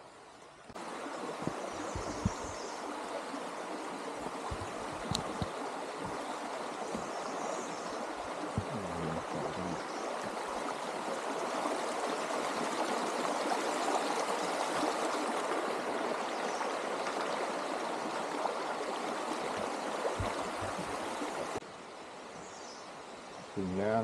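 Water rushing steadily in a waterfall stream. It starts abruptly about a second in, swells a little in the middle and cuts off a couple of seconds before the end, with a few faint low knocks underneath.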